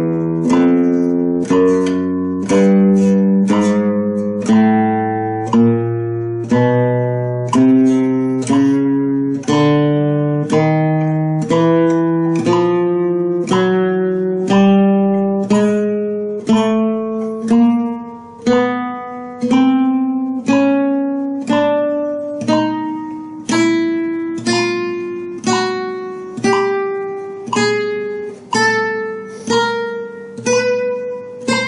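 Nylon-string flamenco guitar playing a slow chromatic scale exercise: single plucked notes, about one and a half a second, each ringing until the next and climbing step by step in pitch.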